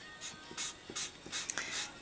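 Alcohol marker nib rubbing across paper in short, uneven colouring strokes, several a second, fairly quiet.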